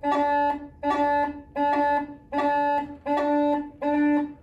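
Uilleann pipes chanter playing a short A-to-E figure about six times, each note cut off by a brief silence. It demonstrates a delayed cut: the E sounds for a fraction before the cut is let in, giving a slightly thicker attack than a clean cut.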